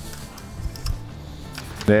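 Soft background music, with faint scratching and ticks from a pencil marking a sheet of plywood.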